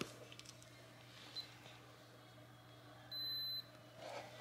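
Digital in-ear thermometer giving one high electronic beep, about half a second long, near the end, signalling that the temperature reading is complete.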